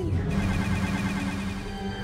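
Cartoon action soundtrack. A warbling electronic targeting tone falls in pitch and cuts off at the start, and then a dense low rumble of battle effects plays under music.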